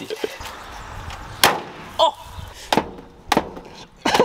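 Four sharp knocks and thuds of a car's body panels, the loudest about one and a half seconds in: a Citroën C15's bonnet being shut and its door closing.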